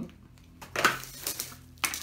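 Clear plastic wrapping crinkling as a boxed robot vacuum cleaner is handled and lifted out, in short irregular bursts, loudest just under a second in and again near the end.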